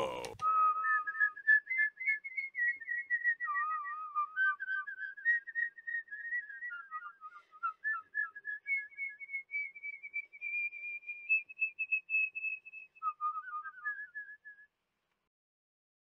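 A person whistling a slow tune alone: one melody line of held, wavering notes that rise and fall, with no accompaniment. It stops shortly before the end.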